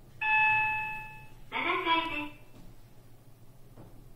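OTIS elevator arrival chime: a single ding that rings and fades over about a second as the car reaches its floor, followed by a short recorded voice announcement from the car.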